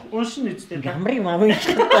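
People chuckling and talking, breaking into louder laughter near the end.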